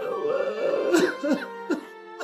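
A man sobbing with a wavering, strained voice, broken by sharp catches of breath in the second half, over soft background music with held notes.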